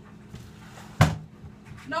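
Rummaging in a wooden kitchen cabinet: a light rustle, then one sharp knock about a second in.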